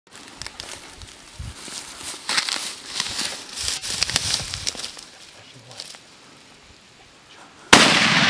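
Rustling and crackling of dry grass and brush underfoot, then near the end a single very loud rifle shot from a Heym rifle chambered in .450/400 Nitro Express, ringing on afterwards.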